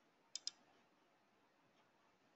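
Two sharp clicks in quick succession about a third of a second in, over faint steady hiss from an open microphone.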